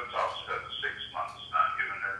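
Sound from the far end of a call heard over a mobile phone's loudspeaker, thin and cut off in the highs, coming in short bursts two or three times a second.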